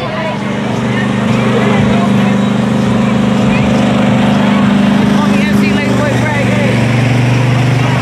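Small engine of a trackless kiddie train running with a steady, even hum, with children's voices over it.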